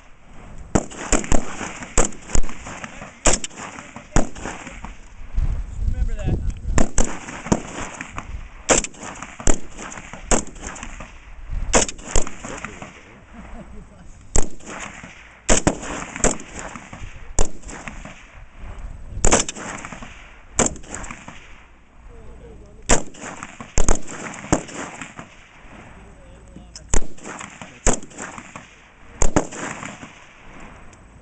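C7 assault rifle (M16-pattern, 5.56 mm) fired in repeated single shots, irregularly at about one shot a second, mixed with shots of varying loudness from other rifles along the firing line.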